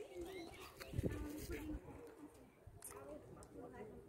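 Faint distant voices of people talking, with a low bump about a second in and a short click near three seconds.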